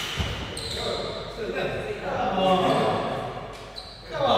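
A single sharp badminton racket-on-shuttlecock hit at the start, then players' voices calling out and talking in the hall as the rally ends.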